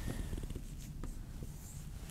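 Faint scratch and squeak of a dry-erase marker writing a circled number on a whiteboard.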